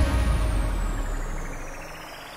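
Trance music breaking down: the beat drops out, leaving a low bass rumble that fades away, a hissing noise sweep that falls and then starts rising again, and a thin high tone gliding slowly downward, the whole growing quieter.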